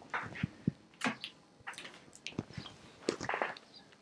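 Handling sounds of a cardboard CD box set being taken down from a shelf: light knocks and rustles, scattered and irregular.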